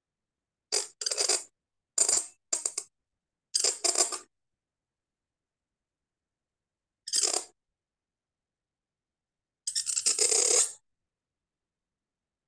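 Reed pen (qalam) nib scratching across paper in short separate strokes as Arabic script is written: a run of quick scratches in the first four seconds, one about seven seconds in, and a longer stroke near the end.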